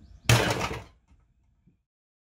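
Old aluminium-cased airbag control module dropped into a trash can full of junk, landing with a single loud clunk that dies away within about half a second.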